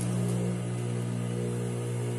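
Mitsubishi industrial sewing machine's electric motor switched on and running, a steady hum.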